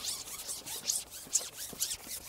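Carbon fishing pole being slid hand over hand through the angler's grip as it is shipped: a quick run of short, scratchy rasps.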